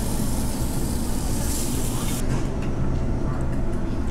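Steady low hum and rumble of the restaurant's exhaust hoods over the tables, with a hiss of meat sizzling on the table grill that cuts off abruptly about halfway through.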